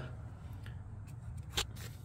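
Low, steady background hum with a few faint, light clicks.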